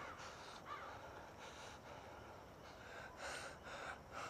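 A woman crying quietly, with several short gasping, breathy sobs.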